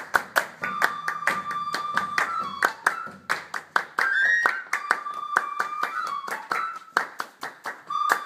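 Group hand-clapping in a quick, steady rhythm, about three to four claps a second, with a wind instrument, flute-like, playing long held notes that slide from one pitch to the next.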